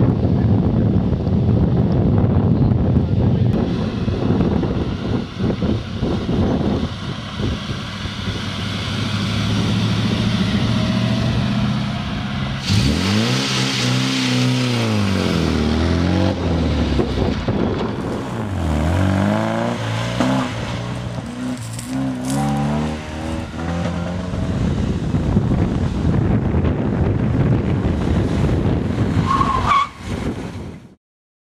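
Classic car engines: a Triumph saloon's engine running steadily under a haze of wind noise, then, from about halfway in, an MGB roadster's four-cylinder engine revving up and down again and again as it is driven hard through a coned course.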